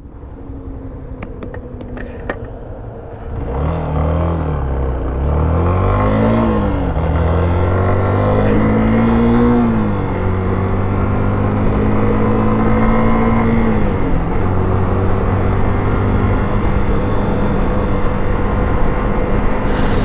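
Yamaha Fazer 250's single-cylinder four-stroke engine pulling away: low at first, then from about three seconds in it accelerates, its pitch climbing and dropping back at each upshift through several gears, before holding a steady cruise.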